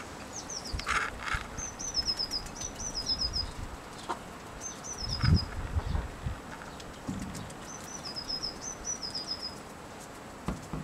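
A small bird singing short, high phrases of quick notes that step down in pitch, repeated several times, over scattered light ticks of hens pecking potato from a plate and a few dull thumps about five seconds in.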